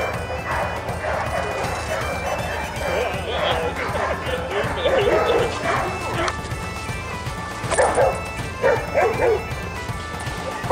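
Bernese mountain dogs barking, a run of barks in the middle and three louder barks near the end, over background music with steady held notes.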